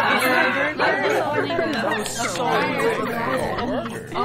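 Several people's voices chattering and laughing over one another, a jumble of overlapping talk.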